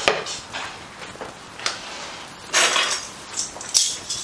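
Kitchen clatter of a wooden spoon and a skillet: a few separate knocks and clinks, with a brief noisy burst about two and a half seconds in.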